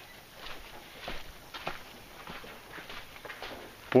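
Footsteps on a sandy, gritty trail: soft scuffing steps a little more than every half second.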